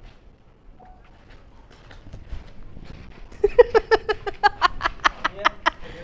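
A woman laughing: a loud run of rapid, evenly spaced ha-ha pulses that starts about halfway through and rises slightly in pitch before it stops.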